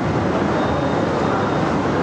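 A steady, loud rushing noise with no distinct events, which cuts off suddenly at the end.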